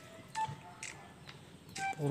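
A goat drinking from a plastic bucket: faint lapping clicks and a soft knock. Two short background-music notes sound, one near the start and one near the end.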